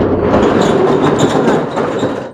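Corrugated steel rolling shutter being pushed up by hand, its slats running up the guides with a loud, continuous metallic rattle.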